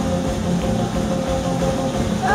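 Live rock band playing an instrumental passage between sung lines: electric guitars holding steady notes over drums and bass.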